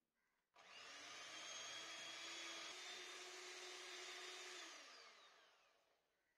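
Electric hand mixer beating cream cheese and sugar: the motor starts suddenly about half a second in and runs at a steady whine, then near the end it is switched off and winds down, its pitch falling as it fades.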